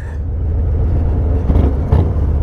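Harley-Davidson Low Rider ST's Milwaukee-Eight 117 V-twin running under way, a steady low rumble mixed with wind and road noise, a little louder about a second and a half in.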